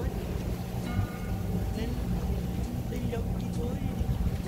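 Boat engine running steadily under way, with water and wind noise over it.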